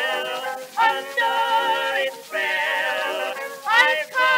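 Early acoustic recording of a female and male vocal duet with orchestra, the singers holding notes with vibrato. The sound is thin, with no deep bass.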